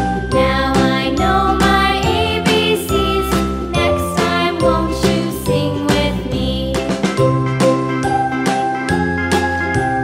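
Background music with a steady beat, a bass line and a melody of held notes.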